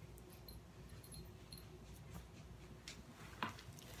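Faint, scattered small clicks and clinks of a metal ball chain and dog tag being handled as the necklace is put on.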